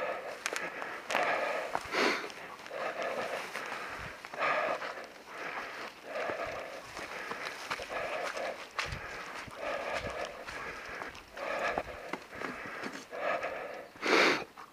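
Heavy, rhythmic panting breaths close to the microphone, roughly one breath a second, the sound of hard exertion on a steep trail.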